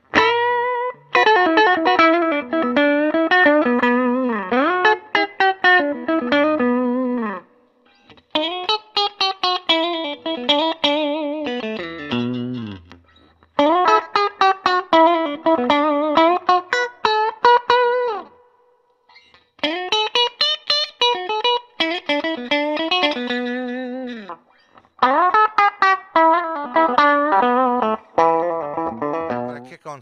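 1996 PRS CE electric guitar played through an amplifier: notes and chords in five short phrases with brief pauses between them. The phrases go through the five positions of the guitar's pickup selector switch, starting on the neck pickup.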